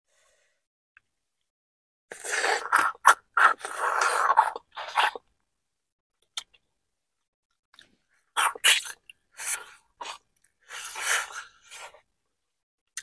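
Close-miked eating sounds from a seafood boil: shrimp being peeled by hand and the meat chewed. They come in short crackly bursts with silent gaps between, starting about two seconds in.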